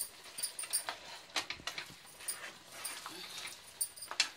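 A spatula stirring a thick chicken curry in a nonstick frying pan: irregular clicks and scrapes of the spatula against the pan.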